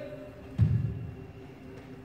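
A single low, dull thud about half a second in, over faint room murmur.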